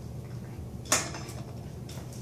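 A dog working at a cushion bed: one sharp click about a second in and a fainter one near the end, over a steady low hum.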